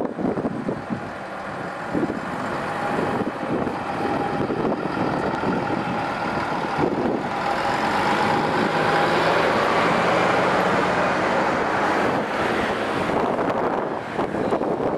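Articulated diesel city bus pulling away and driving past, its engine noise swelling as it accelerates, loudest past the middle with a steady whine over it, then easing near the end as it moves off.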